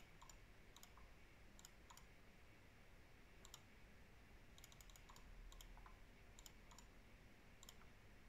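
Faint clicks of a computer mouse, scattered and sometimes in quick runs of two to four, over near-silent room tone.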